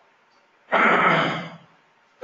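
A man clearing his throat once, about a second long, near the middle of a pause in his talk.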